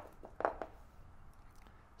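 A few faint clicks in the first second from a hex key tightening the set screw on an adjustable circle-cutting drill bit, then low room tone.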